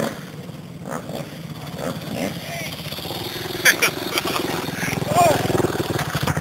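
Motocross bike engine running and getting louder as the bike comes up close, its rapid even pulsing steady by the end, with voices of people nearby.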